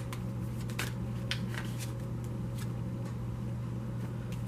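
A deck of tarot cards being shuffled and handled by hand: a series of short, irregular card clicks, thicker in the first second or so, over a steady low hum.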